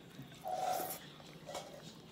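A person eating pasta by hand close to the microphone: a short, noisy mouth sound about half a second in, then a fainter one about a second later.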